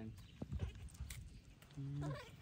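Faint, brief squeaks and whimpers from a baby monkey, with a short low voice sound near the end.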